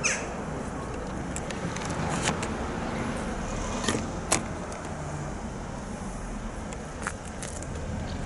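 Steady outdoor background noise with a low rumble, broken by a few short, sharp clicks.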